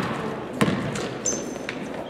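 Basketball dribbled on a hardwood gym floor: a few sharp bounces, with a brief high sneaker squeak about midway.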